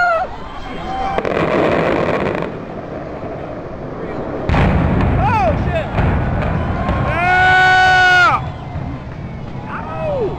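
Fireworks and demolition charges going off atop the New Frontier casino during its implosion: a burst of crackling about a second in, then a heavier rumble of bangs from about four and a half seconds. Spectators whoop over it, and one long held cheer about seven seconds in is the loudest sound.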